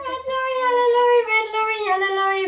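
A young girl singing a tongue-twister articulation warm-up, the words clipped by the tongue on sung notes. A note is held for about a second, then the tune steps down twice.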